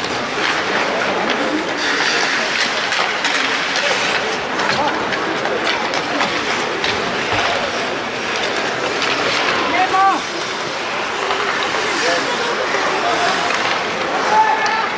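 Ice hockey in play in an echoing arena: skates scraping the ice, with sticks and puck clacking in a steady clatter. Voices call out now and then, most clearly about ten seconds in.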